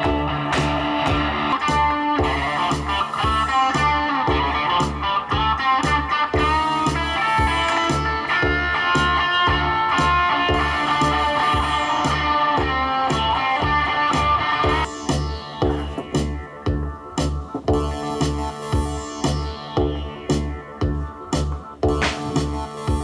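Live electric guitar music over a steady pulsing low beat, about two beats a second. About fifteen seconds in, the sound thins out, leaving the guitar and the beat more bare.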